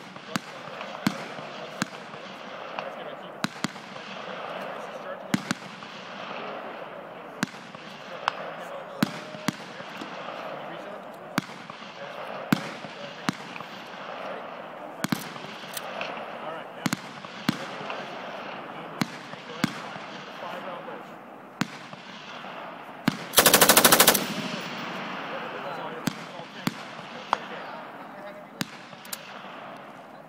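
An M249 SAW light machine gun fires one burst of rapid automatic fire lasting about a second, the loudest sound here. Scattered single gunshots ring out from elsewhere on the firing range throughout, over a murmur of voices.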